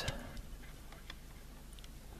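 Faint, irregular small clicks from the locomotive motor block's gear train being turned by hand.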